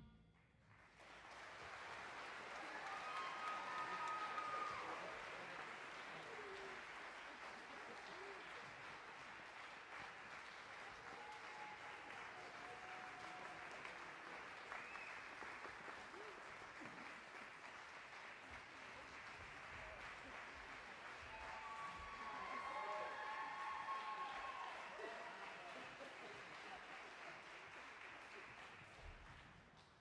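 Audience applauding after an orchestral piece ends, fairly faint, swelling about four seconds in and again a little past twenty seconds in.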